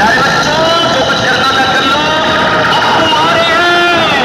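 Loud music played through a large DJ speaker-box stack during a sound test. In this stretch the heavy bass beat drops out, leaving a drawn-out, vocal-like melody over a hissy, distorted background.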